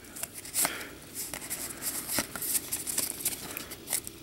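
A stack of Pokémon trading cards handled and slid apart card by card, giving a run of small crisp clicks and light rustles.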